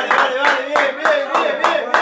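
Two men clapping their hands in a steady rhythm, about four claps a second, with voices between the claps.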